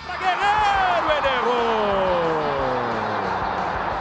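A single long shouted cry that falls steadily in pitch for about three seconds, over loud stadium crowd noise. It is the reaction to a shot that just misses the goal.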